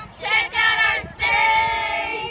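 A group of children's voices calling out together in unison, with a couple of short syllables and then a long drawn-out one held to the end.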